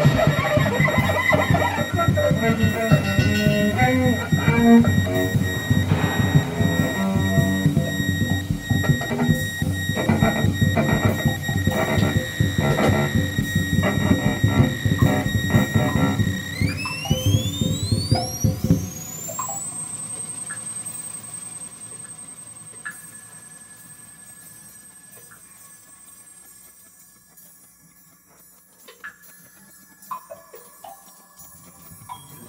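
Free-improvisation ensemble playing a dense, loud texture with steady high tones over it. About sixteen seconds in, rising glides climb to a held high tone. The low part stops a few seconds later, and the music thins to that faint high tone and a few small sounds, fading near the end.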